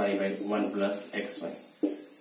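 Crickets trilling steadily in the background, one continuous high-pitched ringing, under a man's voice.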